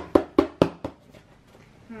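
About five quick, sharp knocks on a tabletop within the first second.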